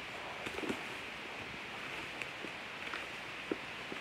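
Bubble wrap around a boxed label printer being handled, giving scattered faint crinkles and clicks over a steady hiss.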